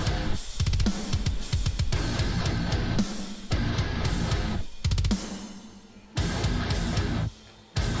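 Heavy metal music with distorted guitars and a drum kit playing a stop-start breakdown. The full band cuts out and comes back in sharply several times, with a brief near-silent break just before the end.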